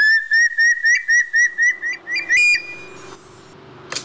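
A bird's whistled call: a quick run of about eight short, clear notes, about four a second, ending on a longer, higher note. A sharp click comes just before the end.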